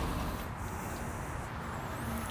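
Quiet background noise with a faint steady hum.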